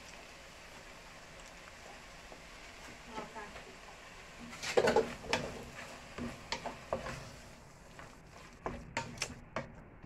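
Wooden spoon stirring a thick tomato-sauced mixture in a large aluminium pot, knocking sharply against the pot's side in several clusters from about halfway through, over a faint sizzle of the food cooking.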